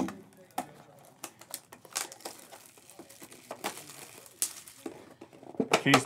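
Plastic wrapping being torn and crinkled off a sealed trading card box: an irregular run of crackles and snaps, a few sharper ones standing out.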